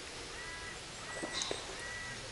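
A bird calling faintly three times, short arched calls about two-thirds of a second apart.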